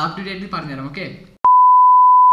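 Steady single-pitch beep of the test tone that accompanies TV colour bars, cutting in sharply near the end after a few words of speech.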